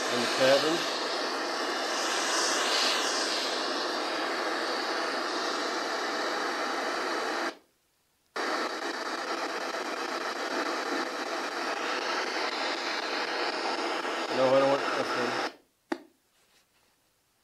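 Loud, steady radio-like static hiss with a brief voice-like fragment about half a second in and again near the end. It cuts out abruptly for about a second in the middle, then resumes.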